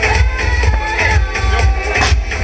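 Loud electronic dance music with a heavy bass beat.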